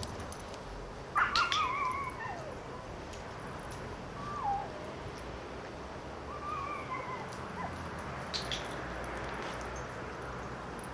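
Sharp double clicks of a dog-training clicker, about a second in and again near the end, with high wavering animal calls in between; the loudest is a wavering call that falls in pitch just after the first click.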